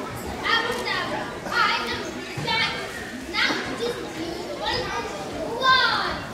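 A young girl's voice calling out in about six short, high-pitched bursts, roughly one a second, the last near the end the loudest.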